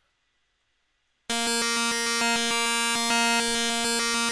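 Subtractor software synthesizer starting about a second in and holding one steady note, its timbre jumping in quick regular steps several times a second. A Matrix pattern sequencer's random curve is stepping the oscillator's phase offset, giving a sample-and-hold effect.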